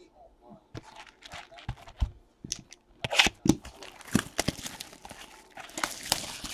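Crinkly plastic wrapping on trading-card packaging being torn and crumpled by hand, in quick crackling bursts that get louder and busier about halfway through.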